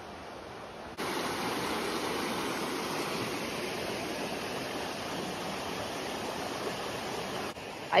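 Running water of a small mountain stream: a steady rushing hiss that starts abruptly about a second in and stops shortly before the end.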